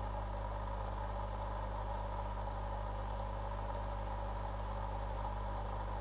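Steady low hum with a faint even hiss, unchanging throughout.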